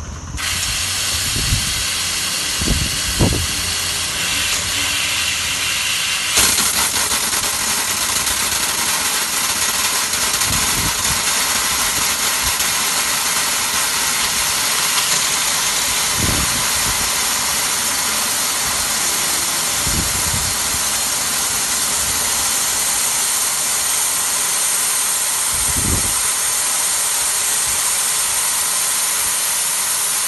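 Compressed nitrogen blowing through stainless-steel CNG tubing, a loud steady hiss as the gas drives the hydro-test water out of the line. The hiss starts abruptly and grows stronger about six seconds in, with a few soft low thumps under it.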